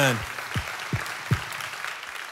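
Congregation applauding, with three short falling tones in quick succession in the middle.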